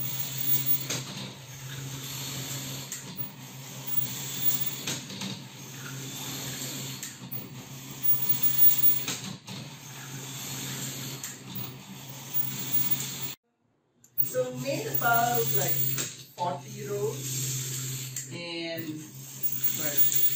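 Motor-driven knitting machine carriage travelling along the needle bed: a steady motor hum with a hiss, swelling and easing every couple of seconds as the carriage passes. The sound cuts off abruptly a little past halfway, and a voice follows.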